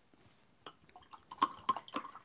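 Light clicks and clinks of a paintbrush and metal watercolour tins and palette being handled, a single tap early on and then a quick cluster of taps with a brief metallic ring about a second and a half in.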